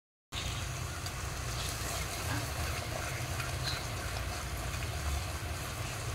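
Steady sizzling of a mashed seeded-banana curry frying in oil in a stone pot, over a steady low rumble. It begins after a brief silence.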